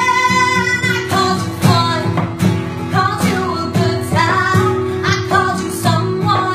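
A woman singing a country song with guitar accompaniment.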